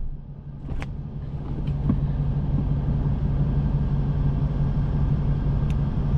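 Car engine idling, a steady low hum and rumble heard inside the cabin, with a few faint clicks.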